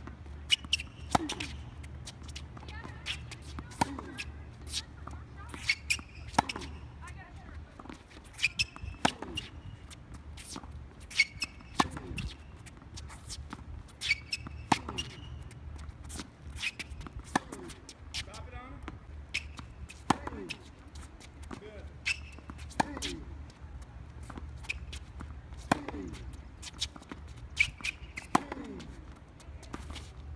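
Tennis balls struck by rackets and bouncing on a hard court in a baseline hitting drill: sharp pops, with the loudest strikes coming about every two and a half to three seconds.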